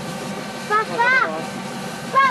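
Jeep CJ5's V8 engine running steadily in the background as the vehicle crawls over slippery rocks, with a person's voice briefly calling out about a second in.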